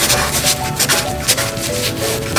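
Felt-tip marker rubbing and squeaking across paper in quick, repeated strokes as it traces a thick outline. Soft background music with a simple melody plays under it.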